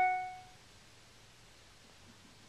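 A single short electronic chime: one pitched note, loudest at the very start, ringing out and fading within about half a second.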